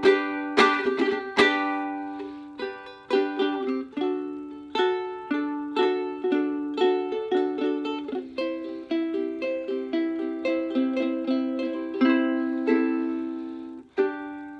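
Ukulele played solo: a few quick strums in the first second and a half, then a steady run of plucked chords, each ringing and fading.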